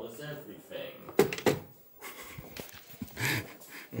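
Two sharp knocks in quick succession just over a second in, against faint voices.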